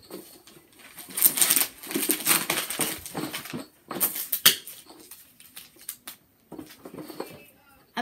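Gift wrapping paper being torn off and crumpled from a boxed board game: a noisy stretch of tearing and rustling paper for a few seconds, a sharp knock about halfway through, then fainter rustles.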